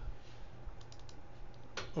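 A few light computer clicks, a quick cluster of ticks about a second in and another near the end, over a faint steady low hum.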